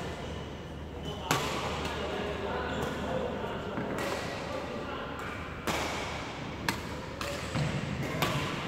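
Badminton rackets striking shuttlecocks: several sharp hits at irregular intervals, each ringing on briefly in a large echoing sports hall.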